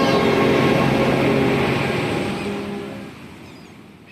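Title-sequence music ending in a loud rushing noise swell that fades away over the last second or so.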